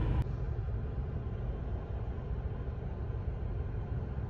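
Steady low rumble and hiss of a car interior, with no distinct events; the sound changes abruptly just after the start, where one recording cuts to another.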